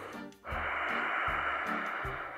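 Darth Vader-style breathing: one long, steady, rasping hiss of breath starting about half a second in.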